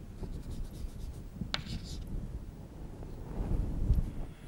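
Chalk writing on a chalkboard: light scratching strokes, with one sharp tap about a second and a half in.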